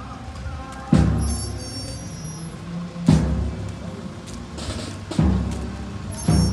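Slow funeral march from a brass band: a bass drum strikes three times, about two seconds apart, each hit booming and dying away under held low brass notes from a sousaphone.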